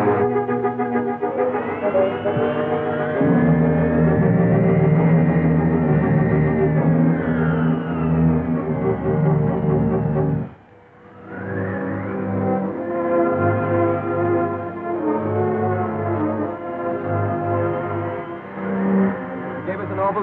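Orchestral film score playing sustained chords, with a line that slides up and back down in the first half. The music drops out briefly about halfway through, then starts again.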